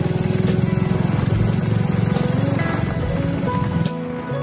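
Background music with a motorcycle engine running at road speed under it. The engine sound stops abruptly just before the end, leaving the music.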